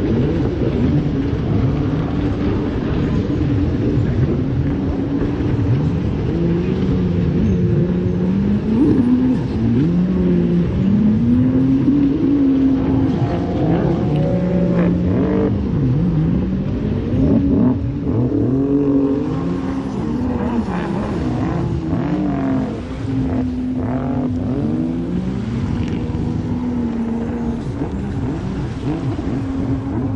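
Several racing jet ski engines revving, their pitches rising and falling and overlapping one another.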